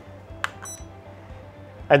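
A button click about half a second in, then one short, high-pitched electronic beep: the Dahua AirShield intruder alarm keyfob arming the system in home mode.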